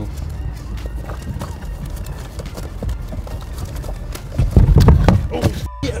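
Small knocks and rustles of items being handled in an open car trunk close to the microphone, then a loud, low rumbling jostle lasting under a second about four and a half seconds in.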